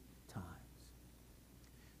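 Near silence: room tone with a faint steady low hum, after one softly spoken word near the start.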